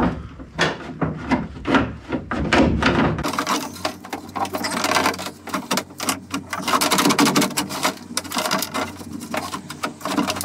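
Window winder mechanism being wiggled off its runners inside a Mini Cooper S Mk3's steel door: metal clicks, knocks and scraping rattles. They come spaced out at first and turn into a dense clatter after about three seconds.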